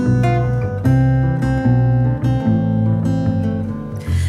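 Two acoustic guitars playing an instrumental passage, chords picked and strummed about once a second and left to ring.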